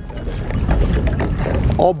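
Wind rumbling on the microphone outdoors on an open boat, a low, uneven buffeting noise that runs without a break.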